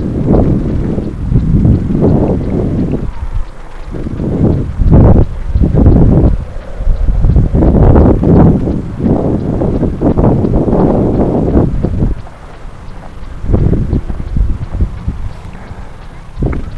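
Wind buffeting the microphone: a loud, irregular low rumble that swells and drops away in gusts every second or so.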